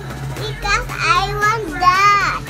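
A young child's high voice calling out three times in short, wordless, sing-song sounds that slide up and down in pitch.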